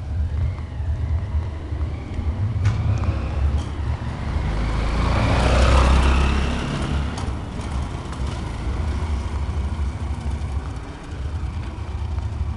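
A motor vehicle passes close by on a cobblestone street: its sound swells from about four seconds in, peaks around six seconds and fades. A steady low rumble runs underneath throughout.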